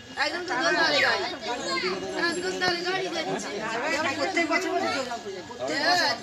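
Several people, children among them, chattering over one another.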